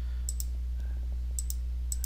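Computer mouse clicks, a few short ones coming in quick pairs, over a steady low hum.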